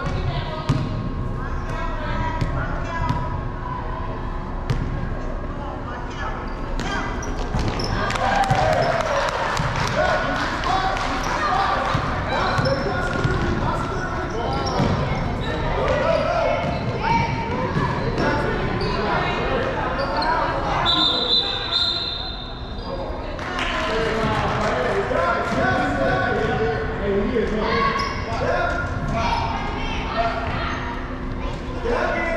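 A basketball bouncing on a hardwood gym floor amid the overlapping voices and shouts of children and spectators, echoing in a large hall. A referee's whistle sounds once, a steady high tone of about a second and a half, two-thirds of the way through.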